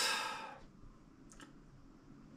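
The breathy end of a spoken word fades out, then a quiet room with one faint, short click about a second and a half in.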